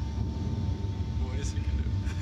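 A steady low rumble with a thin steady hum above it, and a brief faint voice about one and a half seconds in.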